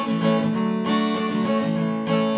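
Acoustic guitar strummed, its chords ringing on, with a fresh strum a little under a second in.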